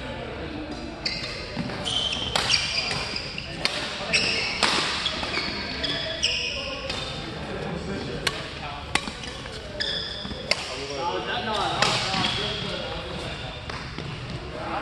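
Badminton doubles rally: repeated sharp racket strikes on the shuttlecock, with short squeaks of shoes on the court floor between them.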